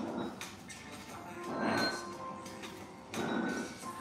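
Small dumbbells pushed and pulled across the floor during a plank, heard as two short rushes of noise, one near the middle and one about three seconds in, with faint clinks, over soft background music.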